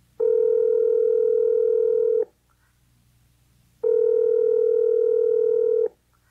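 Telephone ringing tone on the line: two steady electronic rings of about two seconds each, a little under two seconds apart.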